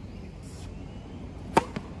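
Tennis racket striking the ball on a serve: one sharp crack about one and a half seconds in, followed by a fainter knock.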